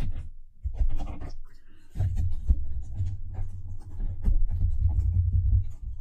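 Tarot cards being shuffled and handled: scratchy rustling and small clicks over a low rumble from hands working on the table, densest from about two seconds in.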